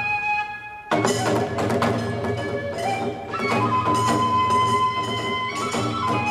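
Kagura accompaniment: drum and hand cymbals struck in a steady beat under a bamboo flute playing long held notes. Near the start the strikes stop for under a second while the cymbals ring on, then the ensemble comes back in together.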